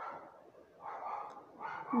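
Faint scratching of a ballpoint pen writing on paper in a quiet pause, with a woman's voice starting a long drawn-out word near the end.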